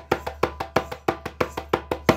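Djembe bass strokes played as even 16th notes with alternating hands, about eight strikes a second.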